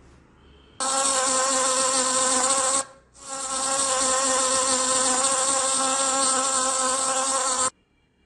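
A bee buzzing, a steady, high droning hum. It comes in two stretches: about two seconds, a short break, then about four and a half seconds, ending abruptly.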